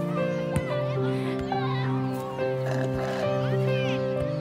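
Film soundtrack music of long held chords that shift every second or so, with children's voices in the background.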